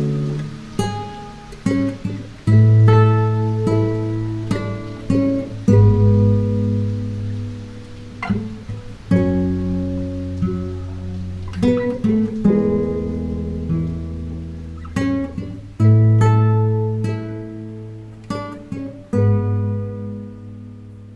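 Nylon-string classical guitar fingerpicked in a slow, gentle passage: chords and single melody notes plucked and left to ring out and fade.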